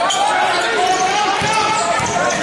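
Basketball bouncing on a hardwood gym floor during a game, with players' and spectators' voices carrying through the hall.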